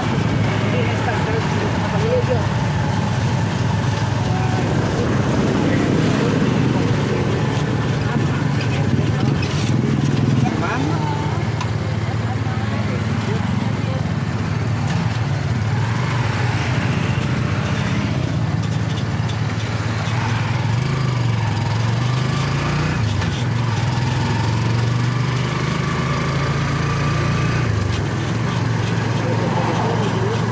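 A motorcycle running at road speed, with a steady low engine drone and wind rushing over the microphone.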